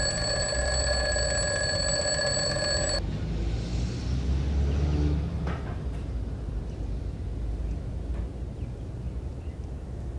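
A phone rings with a steady, multi-tone electronic ring that cuts off suddenly about three seconds in, leaving a low room rumble with a few faint soft sounds.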